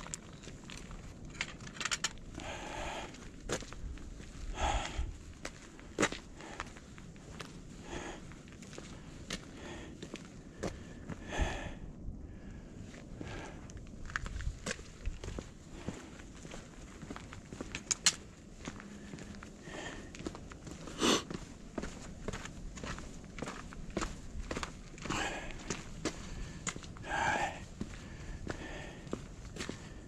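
Footsteps on a stone-paved walkway with a camera held in hand: irregular scuffs and clicks, with a few sharper knocks, one about eighteen seconds in and another about twenty-one seconds in.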